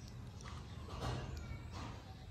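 A few faint, short animal calls over a steady low background hum.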